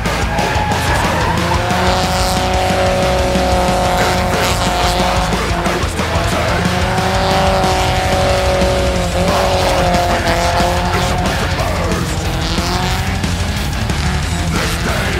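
A drift car's engine held at high revs as the tyres squeal and skid through a sideways slide, its note steady in long stretches and dipping briefly a few times, over rock music.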